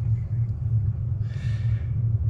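Steady low hum on the open speakerphone line while the caller is away, with a faint soft hiss about two-thirds of the way through.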